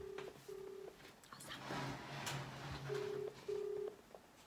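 Telephone ringback tone heard through the phone's speaker in a double-ring pattern: two short beeps, a pause of about two seconds, then two more beeps near the end. The call is ringing and has not yet been answered. Between the pairs there is a rustling noise with a low hum.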